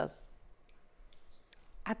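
A woman's speech breaks off into a short pause with a few faint, soft clicks, then her voice starts again near the end.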